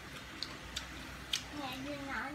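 Soft eating sounds at a table: three or four sharp little clicks of chopsticks against china bowls and plates, spread over the two seconds, with a faint voice starting near the end.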